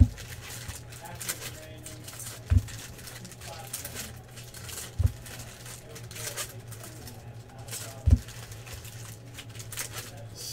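Foil trading-card pack wrappers crinkling and tearing as cards are handled, with four dull thumps against the table: one at the start, then about 2.5 s, 5 s and 8 s in.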